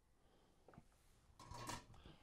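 Near silence: quiet room tone, with a faint click a little before a second in and a short soft rush of noise about a second and a half in.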